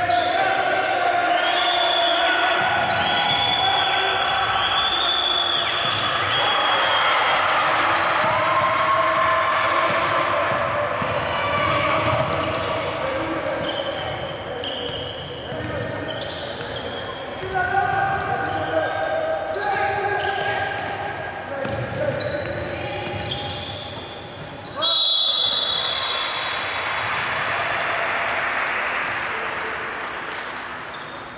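Live basketball play in a large gym: a ball dribbling on the hardwood court while players and coaches shout. Near the end a sudden high tone cuts in, typical of a referee's whistle stopping play.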